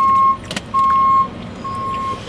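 Garbage truck's back-up alarm beeping while it reverses: three steady beeps at one pitch, about one a second, each about half a second long. A sharp click falls between the first and second beeps.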